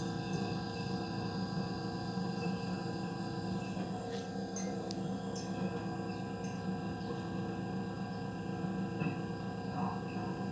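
A steady drone of many held tones, unchanging throughout, with a few faint ticks in the middle.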